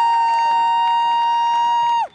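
Several spectators close to the microphone holding a long, high-pitched "woo" cheer, one voice much louder than the rest, that cuts off suddenly at the end.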